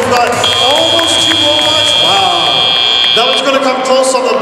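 An FRC field's end-of-match buzzer sounding one steady, high-pitched tone for about three seconds, marking the end of the match, over voices and arena crowd noise.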